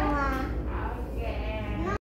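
High-pitched voices of young children, gliding up and down in pitch, over a steady low room hum.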